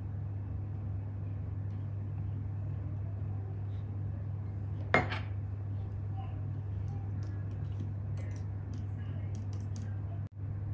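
A metal spoon tapping and clinking against a plastic cup while salt is stirred into water, with one sharp clink about five seconds in and a few faint ticks later. A steady low hum runs underneath.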